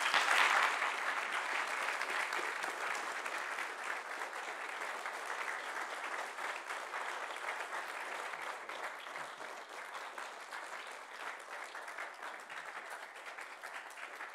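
Audience applause in a lecture theatre, many hands clapping. It begins suddenly, is loudest at the start and slowly dies down.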